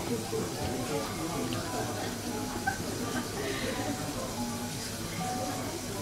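Quiet room background: a low murmur of voices with faint music, steady and with no loud sounds.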